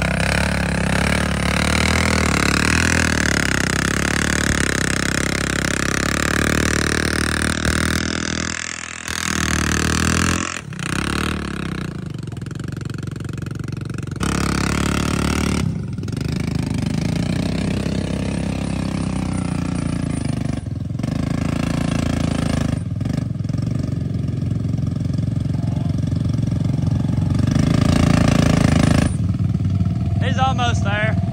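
ATV engine running at high revs as its tyres spin in deep mud, the machine stuck; the engine note drops out briefly several times and picks up again, loudest near the end.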